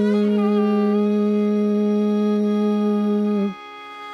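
Carnatic vocal concert music: one long, steady held note from the voice and violin together, which stops about three and a half seconds in, leaving only faint sound.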